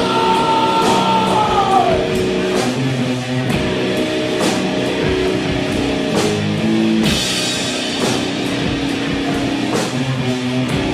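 Heavy stoner-rock music: distorted electric guitar over slow drums. A high held note slides down in pitch in the first two seconds, and a brighter cymbal wash comes in about seven seconds in.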